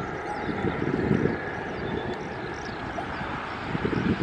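Low, steady rumble of a distant Airbus A340-300's four jet engines at takeoff power as it rolls down the runway, mixed with wind buffeting the microphone.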